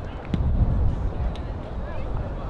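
Open-air football pitch sound: a low rumble of wind on the microphone that swells about a third of a second in, with a sharp knock at the same moment and another faint one a second later, under faint players' shouts.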